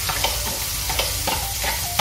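Food sizzling in hot oil in frying pans, a steady sizzle with a few light clicks and taps about a second apart.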